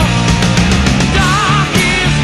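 Heavy metal band recording in an instrumental passage: a lead line with wide vibrato rides over driving drums, rapid cymbal strikes and bass.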